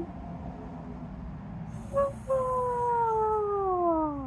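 A woman yawning aloud: a short vocal sound about two seconds in, then a drawn-out yawn whose pitch falls steadily for about two seconds.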